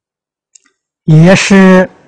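An elderly man's voice speaking two syllables of Mandarin, preceded by a faint click about half a second in.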